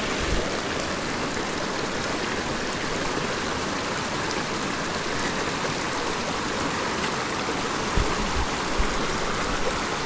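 Shallow creek running steadily over gravel and rocks beneath a log footbridge. Near the end come a couple of brief, dull low thumps.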